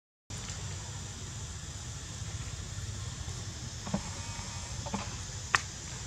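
Steady low rumbling background noise on the camera's microphone, with a few light clicks and one sharp click near the end.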